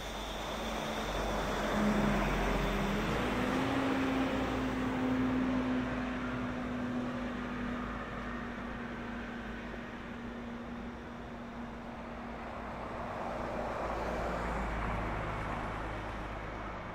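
Road traffic on a wide city street: vehicles passing, swelling about two seconds in and again near the end, with one engine's steady hum that steps up slightly in pitch a few seconds in and fades about three-quarters of the way through.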